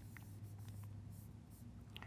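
Faint scratching and light taps of a stylus writing a word on a tablet, over a low steady hum.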